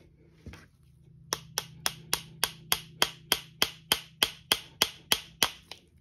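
Small hammer tapping metal pins into a mahogany knife handle: about sixteen quick, evenly spaced, ringing metallic taps, roughly three or four a second.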